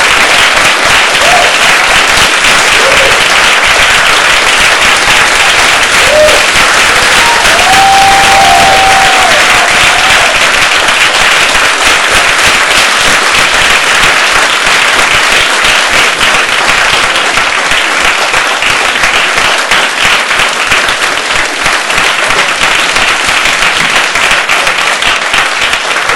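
Audience applauding loudly and without a break, with a few short cries from the crowd in the first ten seconds.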